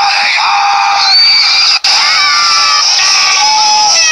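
Cartoon characters screaming and yelling in high voices, with a sudden cut a little under two seconds in, heard through a TV speaker.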